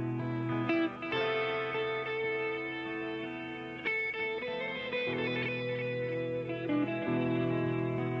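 Live blues band playing an instrumental passage led by electric guitars, with sustained chords that change every second or two.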